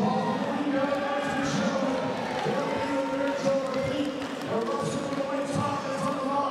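A man's voice over the arena PA, drawn out in long held notes with short breaks between them.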